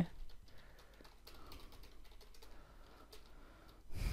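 Typing on a computer keyboard: a faint run of quick, irregular key clicks.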